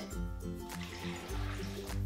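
Soft background music with steady held notes, over coconut water pouring from a measuring jug into a blender jar.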